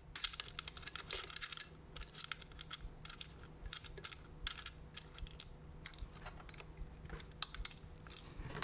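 Faint, irregular clicks, taps and light scrapes of a metal gimbal quick-release plate being handled and fitted against the body of a Sony FX6 camera.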